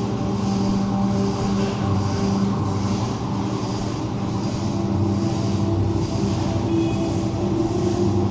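A steady low machine hum with several fixed pitched tones, running evenly with no change.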